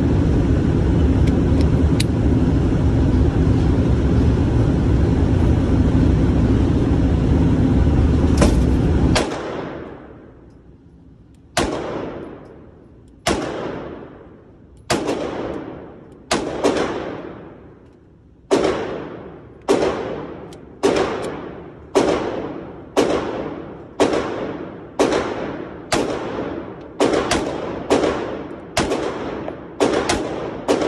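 Glock 43x 9mm pistol fired shot after shot in an indoor range, each shot ringing off in a long echo. The shots start about a second and a half apart and come faster near the end. Before the shooting, a loud steady rumbling noise cuts off suddenly.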